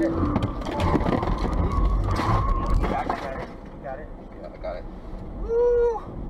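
Inside a Tesla Model Y's cabin during a sudden evasive swerve: steady road rumble with a drawn-out tyre squeal over the first few seconds, and the occupants' startled voices, ending in a loud shouted exclamation.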